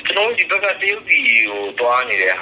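Speech only: a man talking in Burmese.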